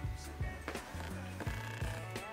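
Soft background music with a low bass line, with a few light clicks and knocks from a camera tripod's legs being adjusted.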